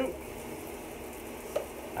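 Soap-dispensing dish scrubber brushing around the inside of a wet rice cooker pan, a steady rough scratching as it works around the corners.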